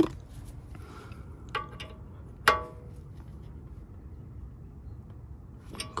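A wrench clinking against metal while a new brake hose fitting is tightened at the caliper. There are a couple of light ticks, then one sharp clink that rings briefly.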